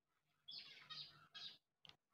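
Near silence: room tone, with a few faint, short high-pitched sounds about half a second in and again near the end.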